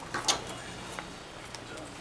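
Playing cards being laid down and slid on a tabletop, with a couple of light card snaps about a quarter of a second in and another about a second in, over faint background chatter.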